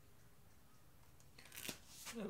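Near silence, then near the end a short dry scrape and click of a paint-covered playing card being handled against a scraper.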